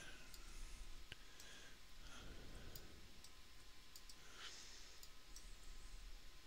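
Faint, scattered clicks of a computer mouse as sliders are dragged and released, over quiet room tone.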